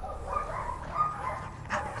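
Belgian Malinois whining faintly, a thin wavering pitch.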